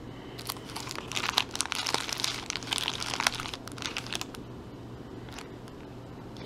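Clear plastic accessory bags crinkling as they are handled, dense crackling for about three seconds, then a few quieter rustles.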